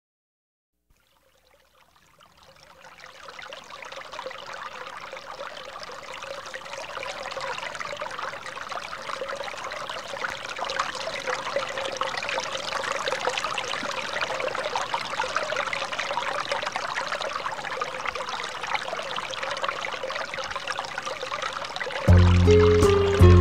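Trickling, babbling water of a small stream, fading in from silence over the first few seconds and then running steadily.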